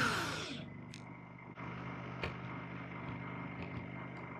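Cordless drill with a driver bit turning in a screw in old wooden decking: a steady motor hum with a surge in pitch at the start and a couple of short sharp clicks. It is backing out non-deck screws whose heads snap off.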